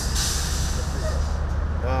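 Steady low rumble of an idling motor vehicle, with a loud hiss of air that dies away over the first second and a half.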